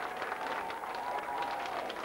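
Audience applauding, many hands clapping at once in a dense, even patter.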